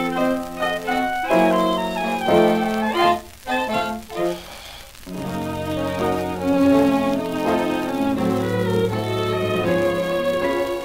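Instrumental passage from a 1934 sweet dance-orchestra 78rpm record, with violins and other bowed strings carrying the melody. The band thins out briefly around the middle, then comes back fuller with held chords.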